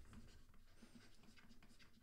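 Near silence, with the faint scratching and tapping of a stylus writing on a drawing tablet.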